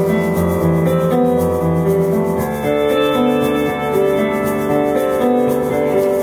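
Live instrumental music: sustained keyboard chords and bass notes with lap steel guitar, over a steady shaker rhythm. The harmony shifts to a new chord about two and a half seconds in.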